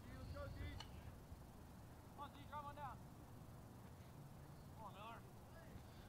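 Near silence: low ballpark background with a steady low rumble. Faint, distant voices call out three times.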